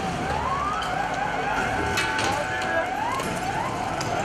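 Police vehicle siren sounding in repeated rising sweeps, several in a few seconds, over steady street noise.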